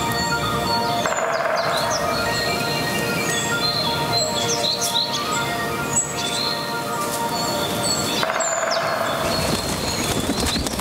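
Sustained ambient music chord with many short high chirps and whistles over it, like birdsong, from the soundtrack of a nature art film.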